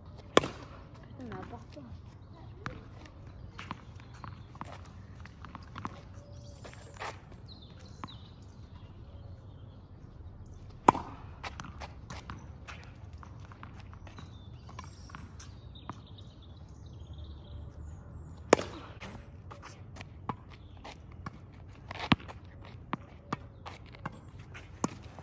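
A tennis racket strikes a ball four times, several seconds apart: once about half a second in, once near the middle and twice more in the last third. Between the hits come lighter ticks of the ball bouncing on asphalt and footsteps.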